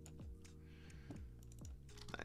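Faint, sparse clicks of a computer keyboard over quiet background music with steady low tones and a regular beat.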